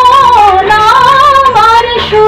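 A woman singing a Bengali song solo, holding long wavering notes that slide downward and then step up to a new pitch about one and a half seconds in.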